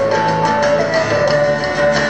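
Live band music: guitars with held melody notes over a steady beat of hand percussion.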